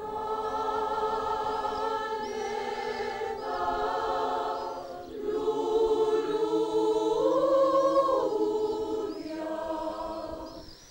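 A mixed choir of women's and men's voices singing held chords in long phrases. It swells to its loudest past the middle, where the voices rise and fall together.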